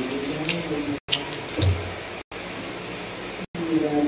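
Letter beads clicking against a compartmented plastic bead box as they are picked out: a few sharp plastic ticks about half a second and a second and a half in, the later one with a low thump. A low voice is heard at the start and again near the end, and the sound briefly drops out about every second.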